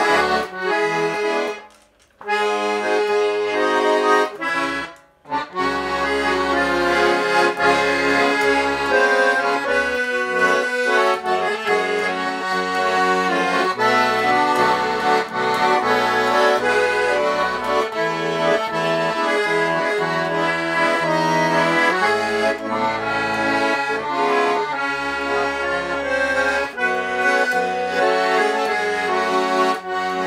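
Vyatka (Вятская) garmon, a Russian button accordion, played solo: a tune of sustained melody notes over changing bass, played by someone who says he still plays badly. The playing breaks off briefly twice, at about two and five seconds in, then runs on steadily.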